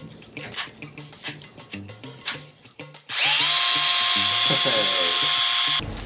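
Background music with a steady beat, then about halfway through a cordless drill starts up with a rising whine, runs at a steady speed loudly for nearly three seconds and cuts off suddenly just before the end.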